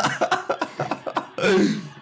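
A man laughing in short, choppy, cough-like bursts, with one louder burst falling in pitch about one and a half seconds in.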